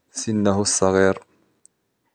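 Mostly speech: a voice speaks for about a second, followed by one short, faint click near the end.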